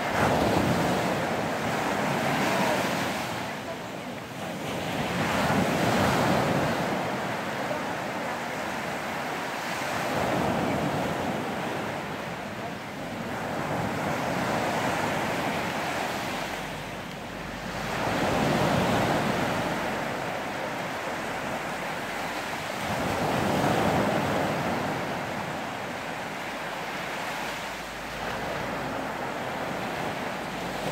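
Ocean surf breaking and washing up the shore, the rush swelling and fading with each wave every five seconds or so.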